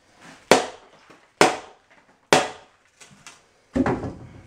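Metal shovel chopping into and turning deck mud (dry-packed sand-and-cement mortar) in a plastic mortar tub: a sharp scraping strike about once a second, four times, the last one doubled.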